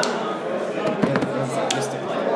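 Murmur of voices in a large room, with a few short sharp taps: one at the start, a couple about a second in, and one near the end.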